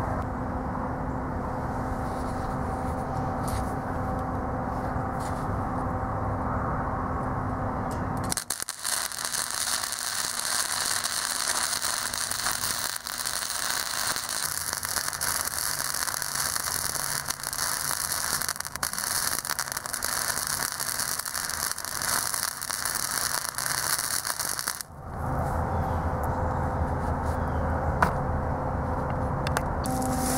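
Wire-feed MIG welder arc on steel rectangular tubing: a continuous crackle from about eight seconds in until about five seconds before the end, with a steady low hum before and after it.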